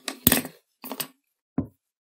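A few short clicks and knocks as drawing instruments are handled on a desk: a metal pair of compasses is put down and a pencil picked up. The loudest is a sharp knock about a quarter second in, followed by two fainter taps.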